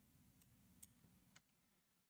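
Near silence, broken by two faint, brief clicks, one a little under a second in and one about a second and a half in.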